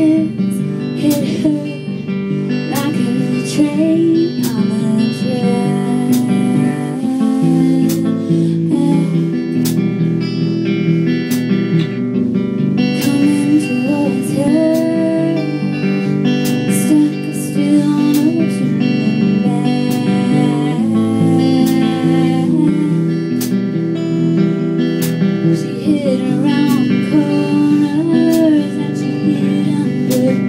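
A live band playing a song: strummed guitar with steady regular strokes, and a sung melody over it.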